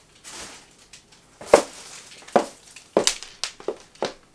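A short rustle, then about five sharp knocks or taps at uneven intervals in a small room.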